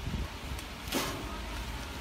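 Plastic packaging film rustling and crinkling as it is fed by hand over the forming collar of a vertical form-fill-seal packing machine. There is one sharper, louder crinkle about a second in, over a low steady hum.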